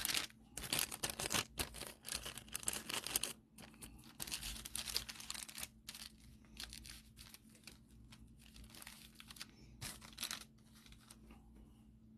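Trading card packaging being torn open and crinkled by hand in a series of short crackling bursts. The bursts are densest in the first six seconds and sparser after that.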